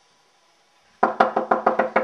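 Rapid knocking on a door, a quick run of about eight knocks starting about a second in.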